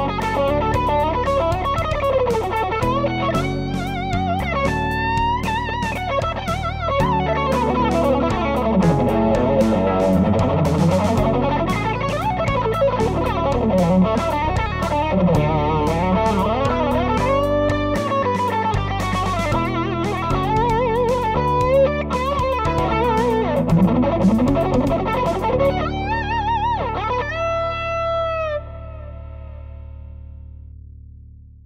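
Telecaster-style electric guitar playing a melodic lead line of quick runs, slides and string bends over a backing track. It ends on a held bent note with vibrato that stops shortly before the end, leaving a fading tail.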